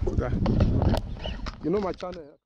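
Wind buffeting and knocks from handling on a handheld camera's microphone, with a brief voice near the end.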